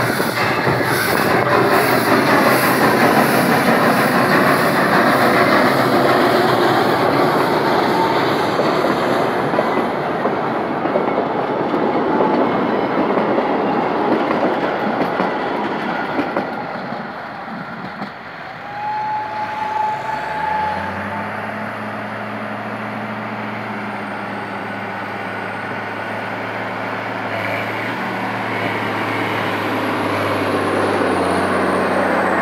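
Narrow-gauge steam train passing close by: the locomotive and its carriages rolling over the rails with wheel clatter for the first half. After a short high tone at about eighteen seconds, a steady low drone takes over for the rest.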